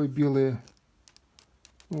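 A few light, irregular clicks and crackles as the white protective film over a new iPhone's screen is peeled up by its pull tab.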